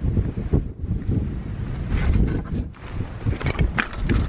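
Strong wind buffeting the microphone in gusts, a heavy rumble that swells and drops.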